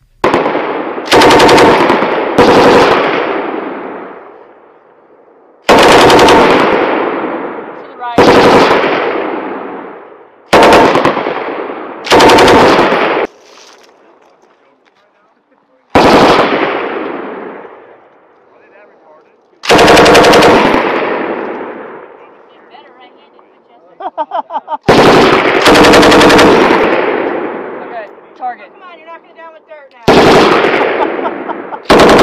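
M240B machine guns firing short bursts, about ten in all at uneven intervals. Each burst rolls off in a long echo over a second or two. A few quicker, fainter cracks come just before the last bursts.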